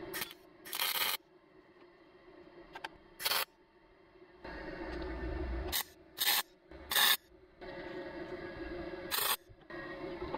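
MIG welder tacking a steel patch panel: several short, sharp bursts of arc crackle alternate with stretches of steady buzzing and sizzle of a second or so.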